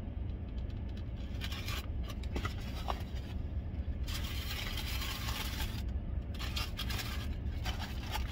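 Paper food wrapper rustling and scraping as takeout food is handled, in irregular bursts from about two seconds in, over a steady low hum.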